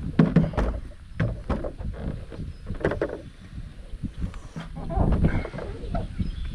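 A stand-up paddleboard being hoisted and pushed onto a car roof: irregular knocks, bumps and scrapes of the board against the roof, over gusty wind rumble on the microphone.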